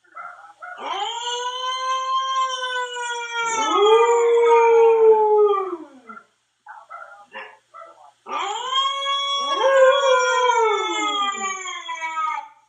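A Siberian husky howling along with a recording of his own howl played from a phone. Two long howls, each several seconds, with a second howling voice joining partway through and both sliding down in pitch at the end. Short, broken sounds fill the gap between them.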